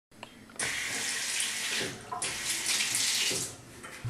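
Water running from a handle-less sensor faucet into a porcelain sink as hands are rinsed under the stream. It runs in two spells of about a second each, dropping away briefly about two seconds in.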